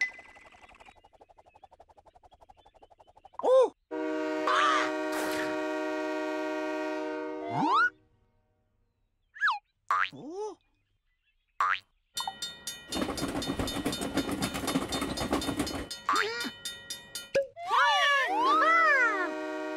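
Cartoon sound effects: a springy boing, a steady held tone for about four seconds, then short swooping boings. After that comes a fast even clicking over a rumble, like a cartoon train chugging, and more springy glides near the end as the train appears.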